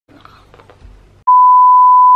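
A loud, steady electronic beep: a single pure tone that starts suddenly a little over a second in, after faint quiet sounds.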